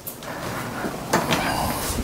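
A hinged interior closet door being pulled open, with a sweep of noise that grows louder about a second in.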